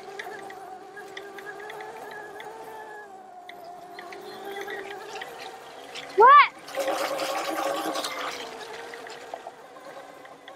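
Oset 24R electric trials bike's motor whining steadily as it rides over grass. About six seconds in, a sharp, brief rising whine is followed by a louder rush of noise for a second or so.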